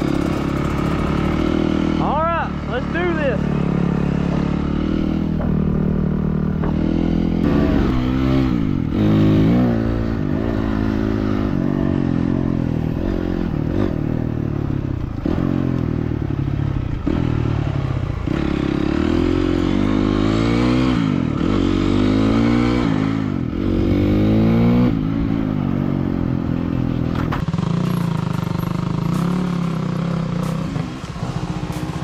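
Dirt bike engine, heard close up from the bike itself, revving up and down as the throttle is opened and closed while riding. Its pitch rises and falls again and again through the stretch.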